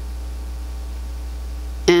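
A steady low electrical hum with faint higher tones above it, and no other sound.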